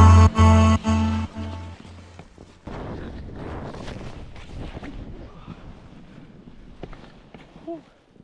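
An electronic track with a heavy bass beat fades out over the first two seconds. Then a steady rushing noise of snow and wind against an action camera follows as the skier slides and tumbles through deep snow.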